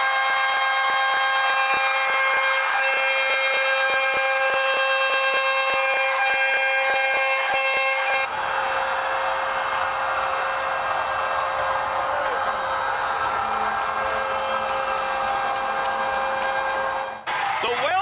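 Arena horn sounding one long steady chord to end the game, over crowd noise and clatter; it cuts off about a second before the end.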